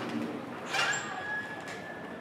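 Outdoor street sound with a bird calling. A short sharp sound comes about three quarters of a second in, and a thin steady high tone follows it.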